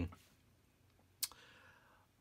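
A single short, sharp click a little past the middle of a quiet pause, after a spoken word trails off at the start.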